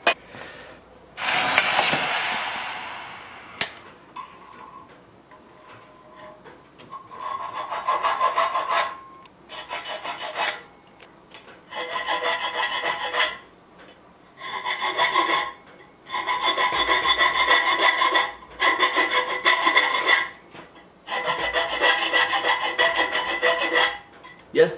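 A hand file rasping across a steel rod clamped in a bench vise, in runs of quick strokes with short pauses between them, the rod ringing with a high tone under the file. A louder scrape comes about a second in and fades over two seconds.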